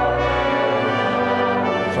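Brass ensemble and pipe organ playing a sustained chord together; the deep bass drops away about half a second in.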